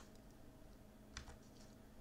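Near silence with two faint clicks close together a little over a second in: a computer key press advancing the lecture slide.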